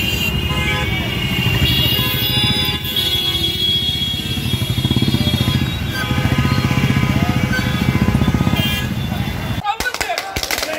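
Many motorcycles running at slow procession pace, mixed with a loud song playing over them. Near the end the sound changes abruptly to a few sharp knocks.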